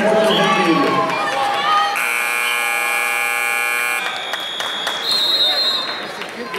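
Gym scoreboard buzzer sounding for about two seconds to stop a wrestling bout, followed by two shorter, higher-pitched steady tones, over crowd noise and voices.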